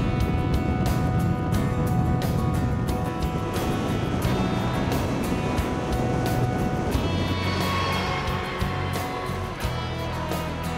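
Background music with a steady beat and held tones.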